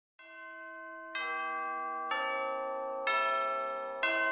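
Bell chimes of an intro tune: four bell notes struck about a second apart, each ringing on under the next, so the sound builds louder step by step.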